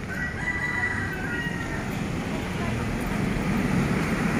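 A rooster crows once, for about a second and a half, over the steady background noise of street traffic.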